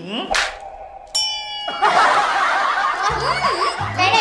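An edited-in sound effect: a short whoosh, then a bright ding chime about a second in that rings out briefly. Background music with voices follows.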